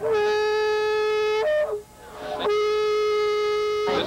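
A long plastic fan horn blown in two long, steady blasts of about a second and a half each, with a brief higher toot between them.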